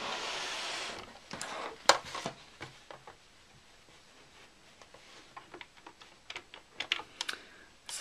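Fabric rustling for about a second, then scattered light clicks and taps that come more often near the end, as fabric pieces are handled and set up at a sewing machine.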